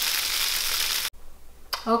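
Tofu scramble with mushrooms, peppers and spinach sizzling in a frying pan, a steady hiss that cuts off suddenly about halfway through.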